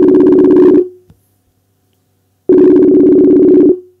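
Outgoing call ringing tone (ringback) while the call waits to be answered: two loud, slightly beating tone bursts of just over a second each, about a second and a half apart.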